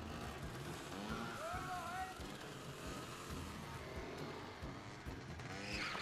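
Motor scooters running steadily, heard in a TV episode's soundtrack played back at a low level.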